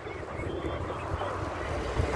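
Outdoor background noise on a phone microphone: a steady low rumble, like wind on the mic, with faint hiss above it.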